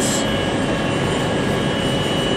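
Steady machine-shop background drone, continuous and even, with a faint steady high whine.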